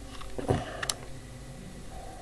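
Handling noises as a small plastic analog multimeter is lifted and held up: a soft thump about half a second in, then a single sharp click just before one second.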